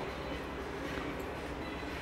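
Steady store background noise: a low hum under a faint, even hiss, with no distinct events.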